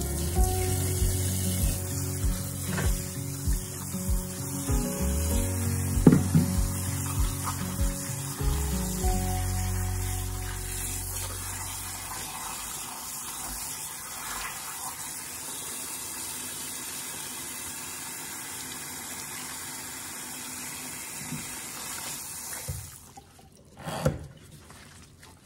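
Kitchen faucet running steadily, the water splashing over salted napa cabbage leaves in a metal bowl in the sink as they are rinsed. The water cuts off near the end, followed by a brief thump. Background music plays over the first half.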